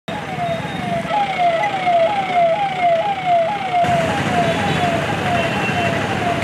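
Police vehicle's electronic siren wailing in quick falling sweeps, about two a second, over street bustle. It grows a little fainter about four seconds in.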